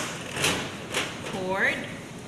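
Two short knocks as a compact plastic DLP projector is handled and turned around on a stainless steel table.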